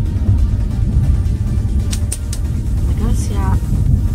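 Steady low rumble of a moving passenger train heard from inside the compartment, with a few short clicks about two seconds in and a brief voice near the end.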